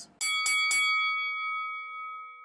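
Boxing ring bell struck three times in quick succession, then ringing on and slowly fading.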